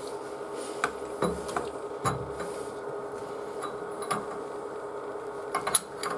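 Water filter housing and brass pipe union fittings being handled as the filter is fitted to the pipe: a few light clicks and knocks, several close together near the end, over a steady background hum.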